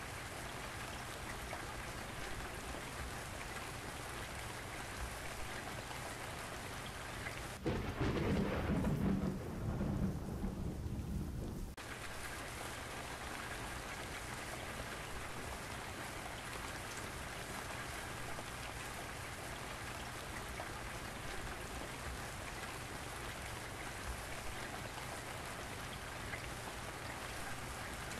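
Steady hiss of falling rain. For about four seconds near the middle, a louder low rumble takes over and the hiss drops away, starting and stopping abruptly.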